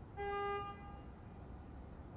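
A single short horn toot: one steady note lasting about half a second, standing out over faint background noise.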